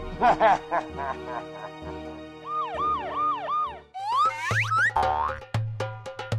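Playful background music with cartoon sound effects laid over it: a few quick chirps at the start, four springy up-and-down pitch glides in a row around the middle, then rising whistle-like glides and a run of sharp clicks near the end.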